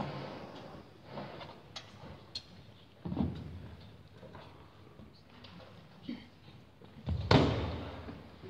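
A quiet pause in a large hall: scattered small knocks and rustles, a dull thump about three seconds in, and a louder heavy thump near the end.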